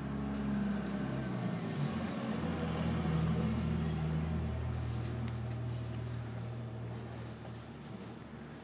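A low, engine-like hum that swells over the first few seconds and then slowly fades, with faint ticks from the crochet hook and yarn being worked.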